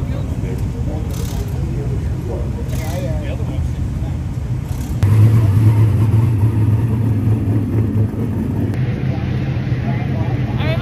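Big-block dirt modified's V8 engine idling steadily, a low hum, louder from about halfway, with voices faint underneath.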